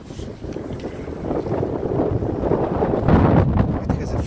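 Wind buffeting the microphone, a gusty rumble that builds and is loudest about three seconds in.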